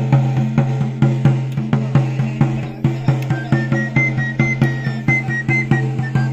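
Salamanca pipe and tabor (gaita charra and tamboril) played by one musician: the drum beats an even rhythm of about four strokes a second, and the high three-hole pipe comes in with a melody about halfway through.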